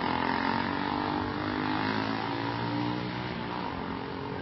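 An engine running steadily: a continuous drone with a stack of humming tones that drift slightly in pitch.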